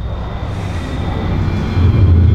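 A long, slow exhale through one nostril in alternate-nostril pranayama breathing, heard as a rushing breath with a low rumble on the microphone, growing louder near the end.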